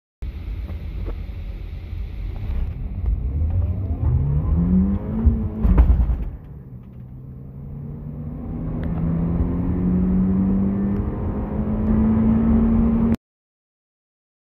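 A 2015 Toyota Corolla Grande's 1.8-litre four-cylinder engine, heard from inside the cabin, accelerating at full throttle: the revs climb steeply, a loud clunk and a sudden drop in pitch mark a gearshift about six seconds in, and the revs then climb again steadily until the sound cuts off near the end.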